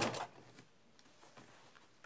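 Electric domestic sewing machine stitching at a steady, rapid needle rhythm, stopping abruptly a moment in. After that, only a few faint clicks.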